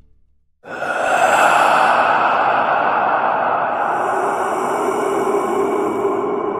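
Intro sound effect: a steady rushing noise that cuts in suddenly after a brief silence, with a higher hiss layered on from a little past halfway.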